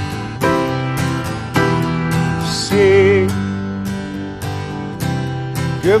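Acoustic guitar strummed in a steady rhythm, about two strums a second, with a short held sung note near the middle.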